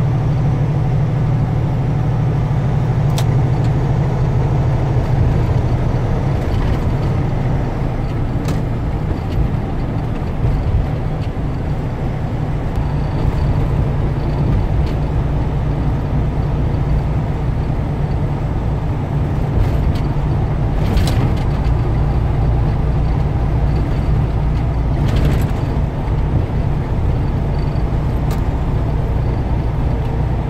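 Semi truck's diesel engine droning steadily at highway speed, heard from inside the cab along with tyre and road noise. Two short hisses come in the second half.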